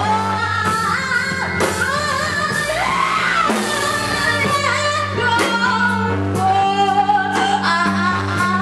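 Live band playing: a voice singing over bass guitar, drums and trumpet.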